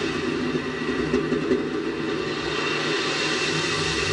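Steady rushing, rumbling noise picked up by the onboard camera of a Space Shuttle solid rocket booster after separation, as the booster tumbles away from the orbiter.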